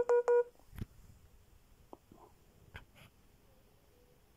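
Android device's low-battery warning tone: a quick run of short, evenly spaced electronic beeps that ends about half a second in, signalling that the battery is down to 15%. A few faint clicks follow.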